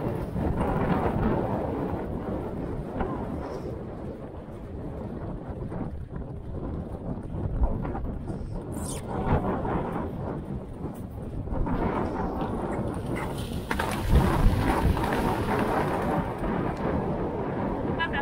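Wind buffeting the microphone of a helmet-mounted action camera on a galloping pony, a continuous rumble with the pony's hoofbeats on turf thudding under it. The rumble dips for a few seconds and swells again in the second half.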